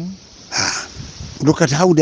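A man's voice in talk, with a short intake of breath about half a second in before he carries on speaking.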